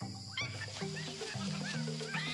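Upbeat music with a steady low bass line, layered with jungle animal-call sound effects: short chirping calls over the beat.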